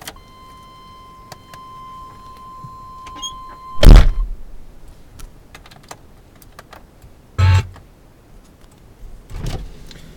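A steady, high electronic warning beep from the GMC Suburban's dashboard as the ignition key is switched on. It runs for about four seconds and is cut off by a loud thump, and two shorter bumps follow later.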